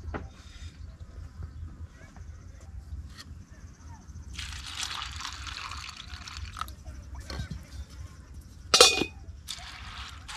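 Strong wind buffeting the microphone: a steady low rumble, swelling in gusts about four seconds in and again near the end, with a sharp loud knock shortly before the end.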